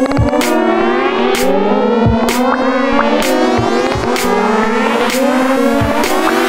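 Techno track: kick drum and sharp percussion hits on a regular beat under synth lines that slide up and down in pitch.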